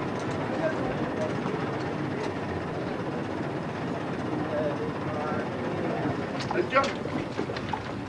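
Indistinct talk of miners underground over a steady rumbling noise, with a couple of sharp knocks about six and a half seconds in.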